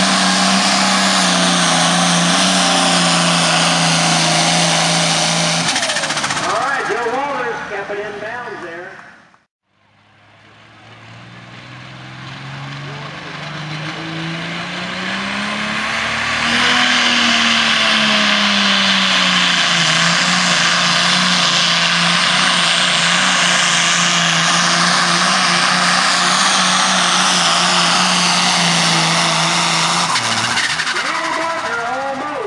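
Turbocharged diesel pulling tractors at full throttle under heavy load, dragging a weight-transfer sled. The first holds a steady note, then winds down about six seconds in. After a break, a second tractor's engine climbs in pitch, drops back, and holds a steady loaded note.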